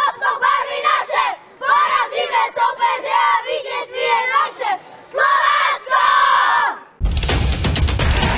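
A group of young boys shouting a team chant together, in bursts with short breaks. About seven seconds in, it is cut off by a sudden crash-like sound effect with deep bass, which then fades.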